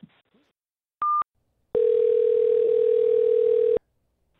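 Telephone tones over a phone line: a short high beep about a second in, then a steady ringback tone for about two seconds as the next call rings.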